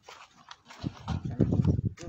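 A humped zebu cow makes a low, rough vocal sound close by. It starts softly about half a second in and is loudest near the end.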